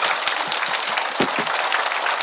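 Audience applauding: many people clapping at once.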